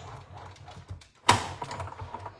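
Cardstock and craft tools handled on a worktable: small clicks and rustles, then one louder sharp rustle about a second in that fades quickly.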